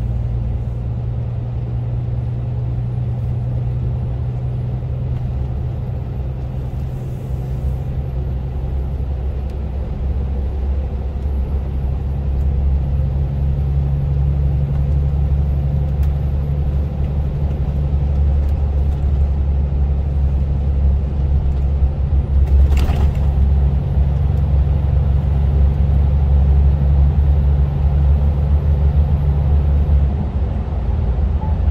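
Lorry engine and road noise droning low and steady inside the cab at motorway speed. The engine note steps up a little about a third of the way in, and there is one short sharp click a little after the middle.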